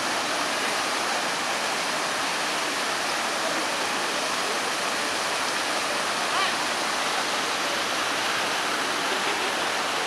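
Water from the Turia Fountain pouring over the basin rim and splashing into the pool below: a steady, unbroken rush of falling water.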